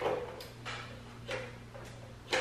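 Faint soft clicks and rustles of hands handling a treadmill's plastic control console, over a low steady hum.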